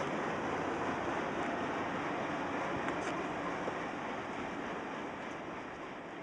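Canadian National freight train's tank cars rolling past on the rails: a steady rumble of wheels on track with a few faint clicks, slowly fading away.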